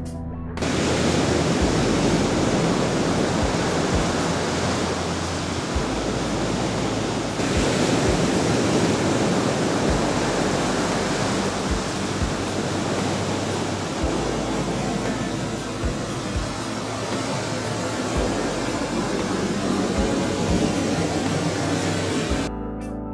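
Ocean surf breaking on a beach: a steady rushing roar of waves that cuts in suddenly about half a second in and grows louder about seven seconds in. A low musical bass drone runs faintly underneath.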